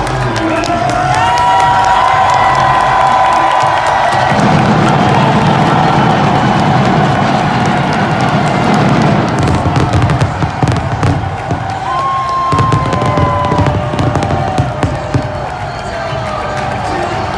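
A large stadium crowd cheering over loud music from the arena's PA, with a heavier low beat coming in about four seconds in. In the second half, a series of sharp pyrotechnic bangs go off as fireworks burst above the stage.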